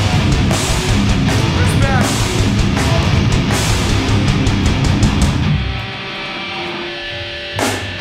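Hardcore band playing live: heavily distorted guitars, bass and drums. About five and a half seconds in, the drums and bass stop and the guitars ring on alone for about two seconds, then a short sweep, and the full band comes back in at the end.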